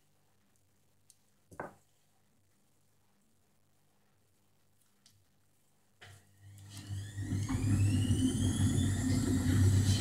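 A small knock, then about six seconds in a small electric blower motor, like a hair dryer's, switches on and spins up, its whine rising over a steady hum and rushing air.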